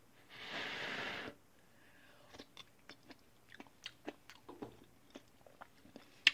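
A person tasting a spoonful of chunky broccoli soup: a breathy rush lasting about a second near the start, then soft scattered clicks and smacks of chewing.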